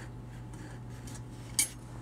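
A single light metallic clink of small metal parts handled by hand, about one and a half seconds in, over a faint steady low hum.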